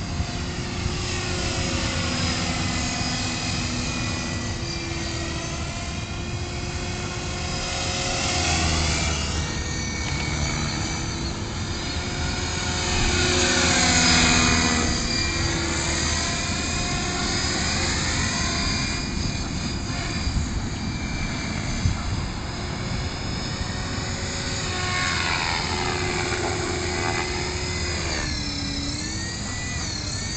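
Gaui Hurricane 425 electric RC helicopter flying, its motor and rotor whine sweeping up and down in pitch as it makes passes, loudest on a pass about halfway through. The rotor head is spinning slowly, the small 1800 mAh packs being taxed hard.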